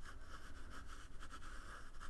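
Quiet room tone with faint, light scratching and rubbing from a hand-moved computer pointing device as the brush is dragged.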